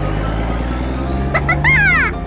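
Cartoon engine sound effect of a monster truck driving off: a steady low engine hum that rises slightly in pitch in the second half. A brief high, swooping sound comes near the end.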